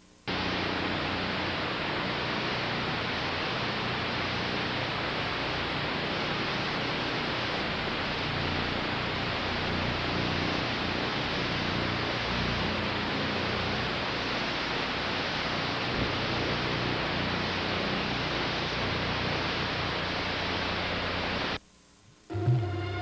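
Steady loud hiss of static from an analog satellite TV receiver's audio on a channel with no usable signal. It starts suddenly and cuts off abruptly near the end.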